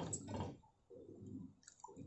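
Whisk stirring coconut milk and agar powder in a stainless steel saucepan: faint liquid swishes repeating about once a second as the agar powder is worked to dissolve while it heats.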